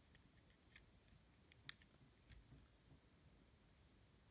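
Near silence, with a few faint small clicks of a small plastic toy being handled, the clearest a little before halfway.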